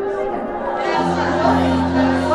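Soft background music of long held chords, with a low sustained note coming in about a second in, under many voices talking and praying at once in a large reverberant hall.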